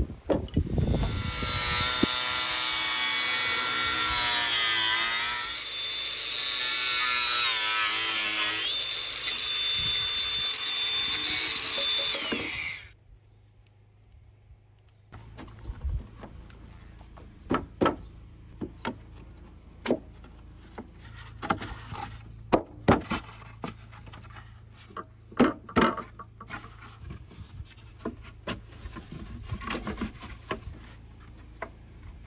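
Cordless angle grinder cutting a hollow press-composite (fibreglass) profile for about twelve seconds, its whine sagging under load and recovering, then cutting off suddenly. After a short quiet gap come scattered knocks and clicks as the cut hollow pieces are handled and fitted together.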